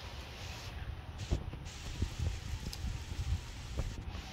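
Wind noise on the microphone, a low uneven rumble with a light hiss, broken by a few soft knocks, four or so, from the camera being handled or the puppy moving about.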